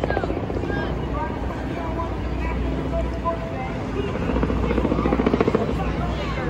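Steady low engine drone that swells for a couple of seconds about four seconds in, with voices in the background.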